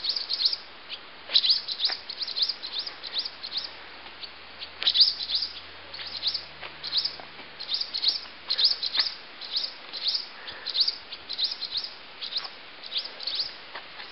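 Small birds calling over and over with short, sharp chirps that drop in pitch, coming in quick clusters of several a second. They are birds nesting in the barn, calling as they swoop at a person coming near it.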